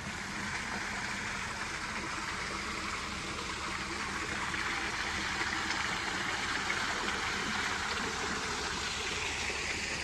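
Water pouring from a stone ledge into a shallow pool, a steady rushing splash.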